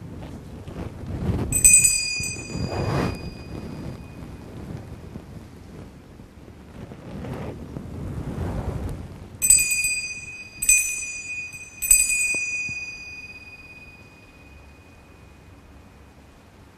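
Altar bell rung by the server: one ring about one and a half seconds in, then three rings a little over a second apart near the middle, each dying away slowly, the bell signal for the elevation at the consecration of the Mass. Two swells of low rustling noise lie beneath the rings.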